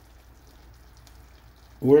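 Faint, steady sizzling of chicken pieces cooking in their pan juices, with a man's voice starting near the end.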